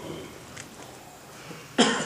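Low room sound, then a single loud cough close to the microphone near the end.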